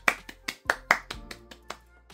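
A quick, uneven run of hand claps in excitement, about eight or ten sharp claps in two seconds, loudest in the first second and tapering off toward the end.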